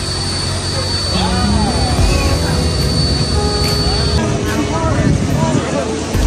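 Ferry boat's engine running with a steady low drone, passengers' voices chattering over it. A thin steady high whine runs with it and stops about four seconds in.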